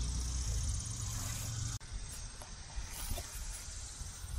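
Outdoor summer ambience: a steady high insect trill over a low rumble, and the rumble breaks off abruptly a little under two seconds in.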